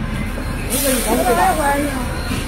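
Heavy truck engines running with a steady low rumble, and a short sharp hiss of air cutting in under a second in.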